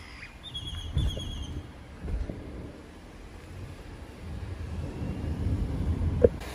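Low, steady rumble of a car moving slowly, heard from inside the cabin, with a few soft thumps. About half a second in, a quick run of high, short chirps is heard for about a second.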